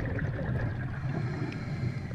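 Muffled underwater sound from a scuba diver's camera: a steady low rush and gurgle of water, with the bubbling of exhaled breath from the regulator.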